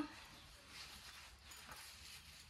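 Very faint rustling of fresh leafy greens being picked over by hand in a bamboo basket, in soft swells over quiet background.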